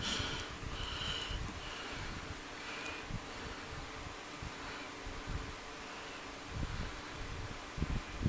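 Faint handling sounds of hands posing a plastic action figure: soft rustles and small bumps, with a louder bump about six and a half seconds in.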